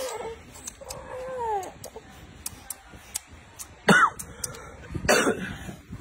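Short wordless vocal sounds: a falling whimper about a second in, then two sharp, cough-like bursts about four and five seconds in, the first the loudest.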